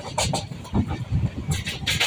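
A passenger train coach running along the track, heard from inside at an open window. The wheels on the rails make an uneven clatter of thumps and knocks.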